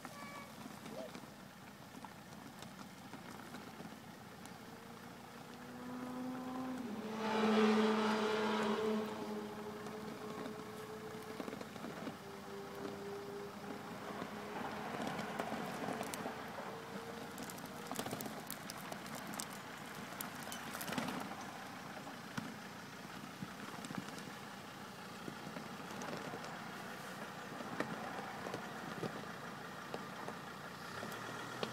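Volvo XC70 D5's five-cylinder turbodiesel running at low speed as the car crawls over gravel, with a louder spell of engine and tyre noise about seven to nine seconds in. Scattered sharp clicks of stones under the tyres follow later.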